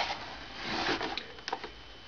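Low-level handling noise: a soft rustle with a few light clicks.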